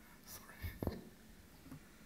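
Faint, breathy, whisper-like voice sounds and a few soft clicks over quiet hall room tone.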